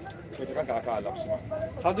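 Indistinct voices of people talking nearby, with a few clicks and knocks near the end.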